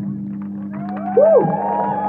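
A live rock song's final chord cuts off, leaving a steady low hum ringing from the guitar amplifiers. Audience members whoop and cheer over it with wavering calls that rise and fall in pitch, and a few claps come near the end.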